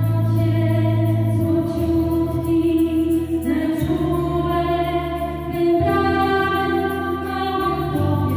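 Female voices singing a Polish Christmas carol (kolęda) into microphones, with acoustic and electric guitar accompaniment. Long held notes, with the chord and bass note changing every second or two.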